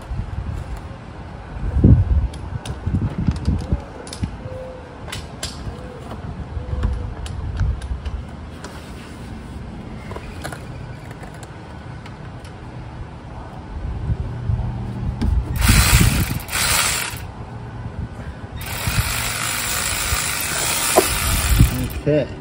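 Socket and extension clanks, then a battery-powered ratchet spinning out a transfer case drain bolt: two short bursts about 15 seconds in, then a longer run of about three seconds near the end.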